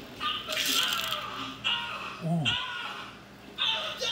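Short vocal bursts, exclamations or laughter without clear words, with a brief metallic clatter about half a second in and a falling vocal sweep just past the middle.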